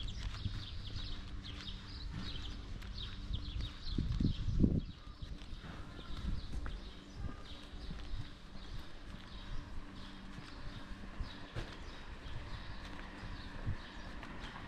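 Footsteps walking on a paved sidewalk, with small birds chirping in the first few seconds and a brief low rumble about four to five seconds in.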